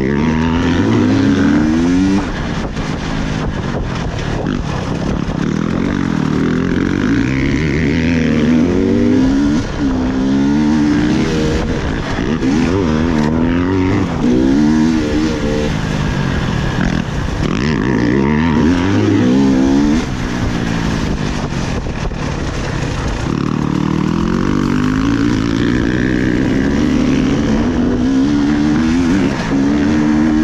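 Onboard sound of a 300 cc two-stroke enduro motorcycle being ridden hard: the engine revs climb and drop back over and over as the throttle is opened and closed through the corners.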